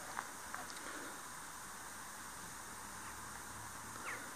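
Faint, steady background hiss, with a few soft ticks in the first second.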